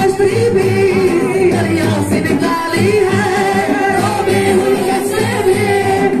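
Group of young male voices singing a qawwali together into microphones, long held, wavering lines carried by several singers at once.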